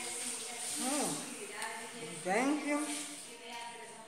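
A woman's wordless 'hmm' hums of enjoyment while tasting food. Her voice slides down in pitch about a second in and rises again a little after two seconds.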